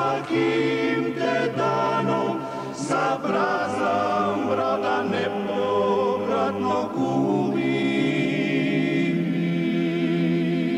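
Dalmatian klapa, a male a cappella group, singing in close harmony: a low bass line holds each chord while the upper voices sing over it. From a little past the middle a high voice comes in with a marked vibrato.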